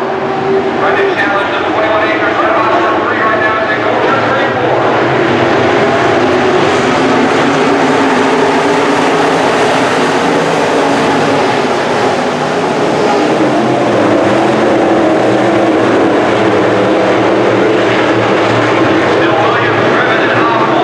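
A pack of IMCA Sport Modified dirt-track race cars, V8 engines, racing around the oval. Several engines overlap in one loud, continuous drone that shifts in pitch as the cars pass.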